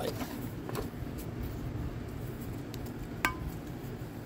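Light handling noises as a light is moved around over a cylinder head, with one sharp, ringing metallic clink about three seconds in, over a steady low hum.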